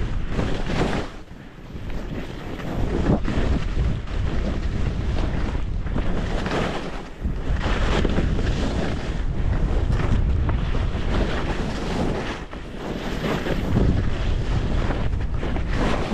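Wind rushing over the camera microphone and skis hissing through fresh powder snow during a steady descent. The rush eases briefly a few times between turns.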